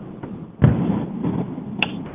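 A sudden thump over a conference-call phone line about halfway through, followed by about a second of muffled low rumbling noise and a brief high blip near the end.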